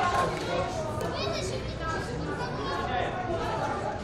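Overlapping voices of young rugby players and people at the pitchside, shouting and chattering, with one high-pitched call about a second in.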